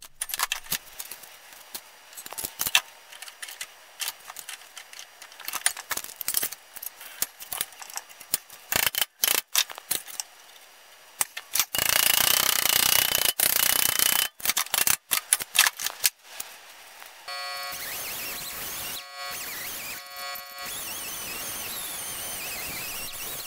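Hammer blows on sheet steel clamped around a pipe in a bench vise, many sharp irregular strikes bending the part to shape, with a louder stretch of noise about twelve seconds in. About seventeen seconds in, an air tool fitted with a Scotch-Brite pad starts running with a steady whine, cleaning hammer and vise marks off the metal.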